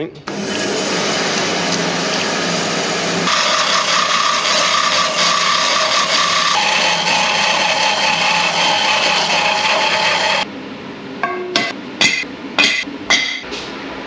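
Metal-cutting bandsaw running and cutting through square metal tube, a steady grinding hiss with ringing tones that shifts twice as the cut goes on. It stops suddenly about ten seconds in, followed by a few sharp metallic knocks.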